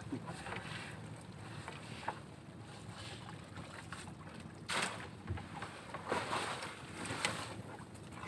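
Seawater splashing and dripping as a wet fishing net trap is hauled by hand into a small boat, with a few louder splashes in the second half, over wind on the microphone.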